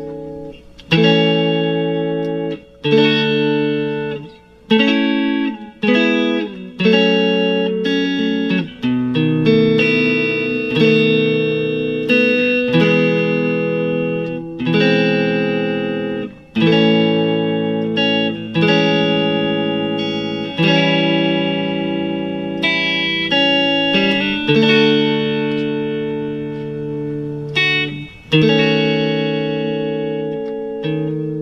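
Fender Stratocaster electric guitar playing a chord progression in A major (A, Amaj7, A7, D and on), one chord struck about every one to two seconds, each left to ring and fade before the next.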